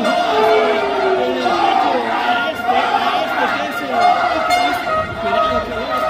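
Arena crowd at a lucha libre match shouting and cheering, many voices overlapping.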